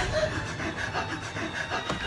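Hands rubbing and scraping against a wooden door, an irregular, fairly quiet scuffling.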